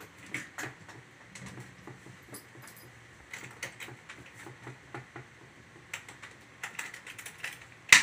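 Pink rolling makeup trolley case being handled: its latches and fittings giving scattered small clicks and knocks, with one sharp knock near the end.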